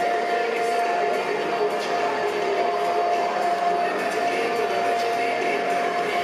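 Stadium ambience during pre-game warm-ups: a blend of distant chatter and music over the public-address system, with one steady held tone above it.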